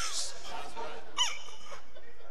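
A man's voice giving one short, high-pitched, falling whimper about a second in, in the manner of someone begging in fear.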